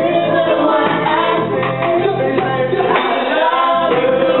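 Live band playing a reggae beat, with several voices singing a chorus together into microphones.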